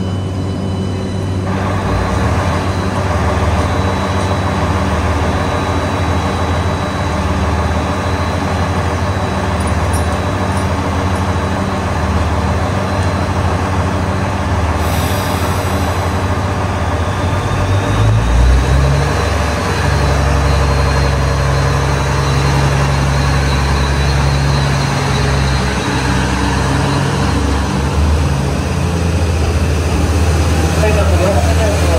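JR Central HC85 hybrid diesel train's engine running steadily at the platform. About fifteen seconds in there is a brief air hiss, then the engine note rises and runs harder, with a faint high whine rising slightly, as the train starts to pull away.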